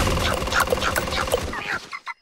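Cartoon sound effects of a giant ostrich running: a rapid patter of footfalls under a string of short, bird-like calls, fading out just before the end.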